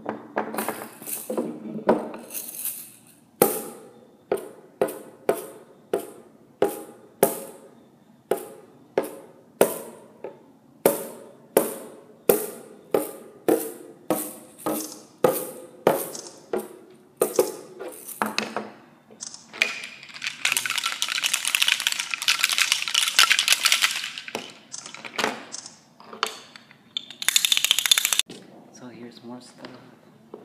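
Hand percussion being played: a drum struck with a ball-headed beater about twice a second for nearly twenty seconds, each stroke ringing briefly. Then a shaken instrument gives a steady rattling hiss for about six seconds, with a shorter, louder burst of shaking near the end.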